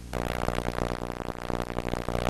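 A snatch of TV channel audio, music with a keyboard or synthesizer sound, cuts in just after the start. It plays loudly over a steady low electrical hum.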